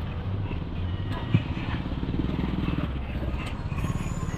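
Busy night-market ambience: a small engine runs steadily under a murmur of crowd voices, with one sharp knock about a second and a half in.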